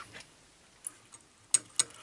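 A few short, faint clicks, four in about a second in the second half, from a pair of pliers being handled at the amplifier chassis.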